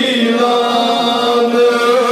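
Male voice chanting a devotional naat, holding one long, steady note.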